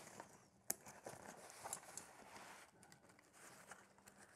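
Near silence, with a faint click under a second in and light rustling as the nylon webbing straps and buckles of a hunting backpack are handled and adjusted.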